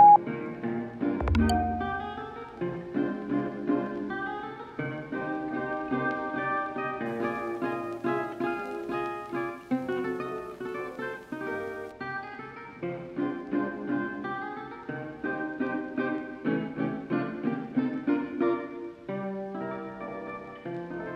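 Background music of plucked acoustic guitar playing a steady run of picked notes and chords, opening with a low thump about a second in.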